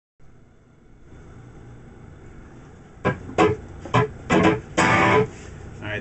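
Electric guitar played through an amplifier: a low amp hiss for about three seconds, then a short run of loud strummed chords, five or six hits with the last one held briefly before it is cut off.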